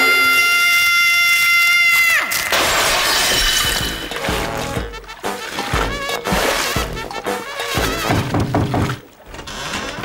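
Cartoon sound effects over background music. A character's long held cry stops about two seconds in, and then comes a noisy crash and rush of flooding water with scattered hits, from a bath tap left running.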